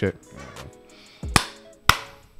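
Two sharp hand claps about half a second apart, following the end of a spoken "mic check".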